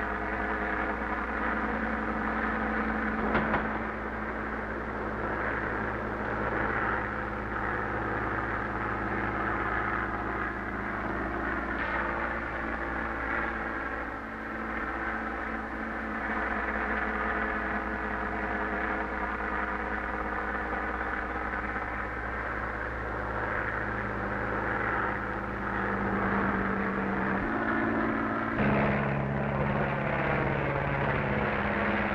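Biplane engine droning steadily in flight, its pitch shifting a few times.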